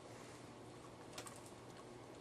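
Very quiet room hiss, broken a little past the middle by a quick cluster of three or four faint small clicks, like light handling of a hard plastic object.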